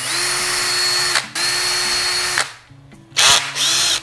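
Cordless drill motor whining as it bores a small pilot hole in a plastic part: two runs close together, a pause, then a shorter run near the end.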